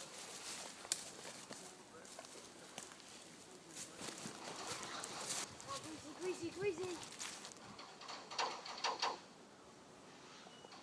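Footsteps rustling through dry leaf litter, with a child's voice calling out indistinctly a couple of times in the second half.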